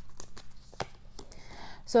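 Oracle cards being handled as one card is drawn from the deck: light card-stock rustling and a few small ticks. A word of speech comes in near the end.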